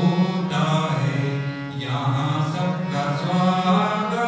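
Devotional song: a voice singing long, gliding notes over a harmonium's sustained reed chords and drone.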